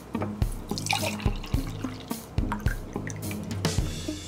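Sikhye, a sweet rice drink, being poured from a plastic bottle into a glass mug, splashing into the glass about a second in and again near the end. Background music with a steady drum beat runs throughout and is the loudest sound.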